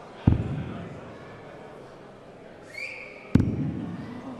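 Two darts thudding into a bristle dartboard, one just after the start and one about three seconds later, each followed by a short echo in a large hall.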